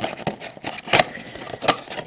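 A cardboard trading-card blaster box being handled: rustling with a few sharp taps and knocks, the loudest about a second in.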